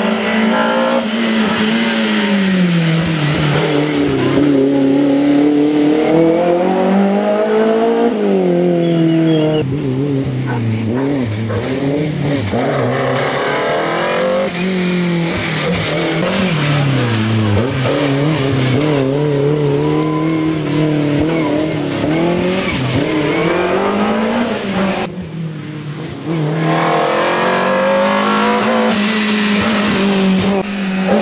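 BMW E30 M3 race car's four-cylinder engine at full race effort up a hillclimb, revving hard, its pitch climbing and dropping again and again with each gear change and lift for the hairpins. Briefly quieter once, near the end.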